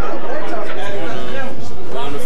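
Indistinct chatter of many people talking at once in a crowded corridor, loud and steady.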